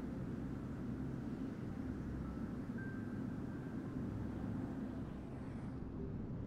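Steady, low ambient drone of meditation background music, with a few faint high tones in the middle.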